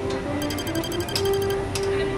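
Background music with held tones, over which a rapid run of high electronic ticks, about a dozen a second, lasts about a second, followed by a few single clicks: a computer-typing sound effect for text being typed onto the screen.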